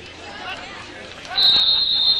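A referee's whistle gives one long, steady, high-pitched blast about a second and a half in, over low crowd murmur.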